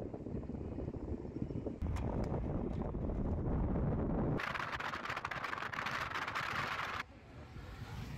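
Wind and road noise from a moving vehicle running alongside a road cyclist, with wind rushing over the microphone and a low rumble. About four seconds in, a brighter, hissier rush cuts in suddenly and stops just as suddenly some three seconds later.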